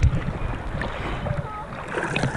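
Small sea waves sloshing and lapping around a camera held at the water's surface, with irregular low surges of water against the housing and wind on the microphone.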